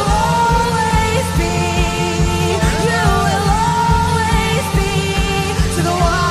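Contemporary worship music: a full band with a steady kick-drum beat about twice a second under a sustained, gliding melody line.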